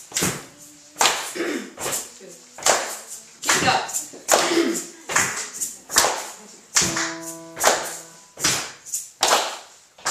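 Hands clapping a steady beat in a small room, about one and a half claps a second, as the rhythm for a song's intro. A held piano note sounds about seven seconds in.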